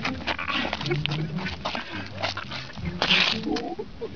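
Bear cub growling as it grabs at a man's leg, with short scuffs and a person laughing about a second in.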